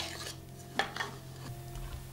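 Chopsticks and a spatula knocking against a glass mixing bowl while tossing small fish in dry tempura flour. There is a sharp clink at the start and a couple of softer knocks about a second in, with soft rustling of the floured fish between them.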